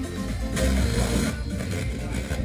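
Bass-heavy music playing over loudspeakers from a vintage Sansui stereo receiver.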